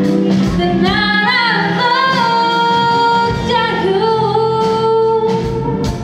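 A woman singing a slow ballad live, sliding up into long held notes with vibrato, over a band accompaniment that thins out in the middle of the passage.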